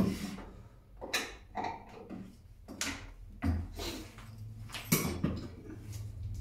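Clunks and clicks of a small metal crank being handled and fitted into the router lift of a workshop router table: about seven separate knocks, the loudest at the very start and about five seconds in.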